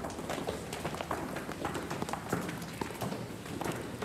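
Horse hooves clip-clopping irregularly on a hard street surface, several strikes a second, over a steady background hiss.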